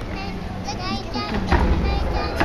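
A young child's high-pitched, wavering voice close to the microphone, then a single sharp snap about one and a half seconds in, over the low murmur of a large hall.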